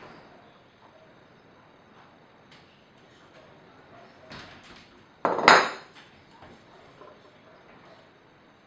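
Kitchenware being handled on a stone countertop: a few light knocks, then about five seconds in one loud clunk with a short ring, as the glass oil bottle and the wooden mortar and pestle are moved and set down.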